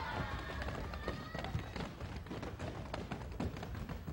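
Many feet running and stamping on a wooden stage floor, a rapid, uneven patter of taps and thuds, with shouting voices in about the first second and a half.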